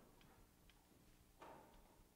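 Near silence: room tone with a few faint clicks, the plainest about one and a half seconds in.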